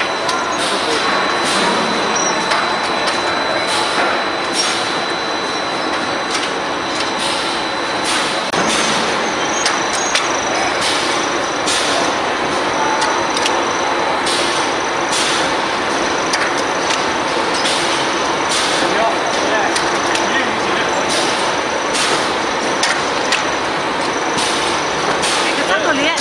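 Automatic croissant production line running: a steady mechanical din with sharp clacks coming at frequent, uneven intervals.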